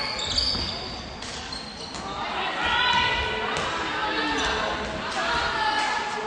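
Handball being dribbled and bounced on a sports-hall floor, with shoes squeaking near the start and players' voices calling out through the second half, all echoing in the large hall.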